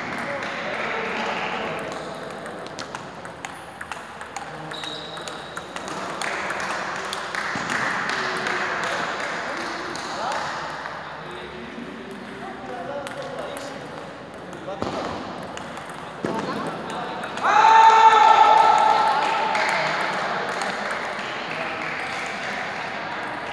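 Table tennis ball clicking off bats and table during a rally, with voices talking in the background. A loud, high shout rings out about two-thirds of the way through.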